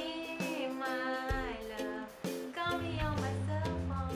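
A woman singing a pop-song melody over instrumental music, with a deep bass line coming in near the end.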